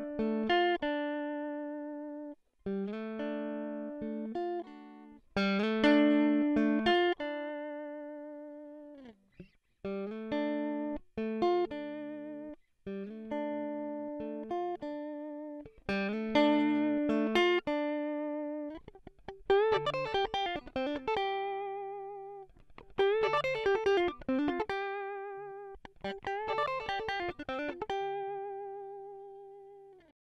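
Clean electric guitar: a Fender Stratocaster played through its middle-position pickup, first an original 1955 Fender Strat pickup, then a VFS-1 pickup from about halfway through. It plays short phrases of plucked notes that ring out and die away, and the held notes in the last phrases carry vibrato.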